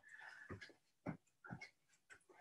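Near silence, with a few faint, short breaths of a person exerting themselves during a squatting exercise.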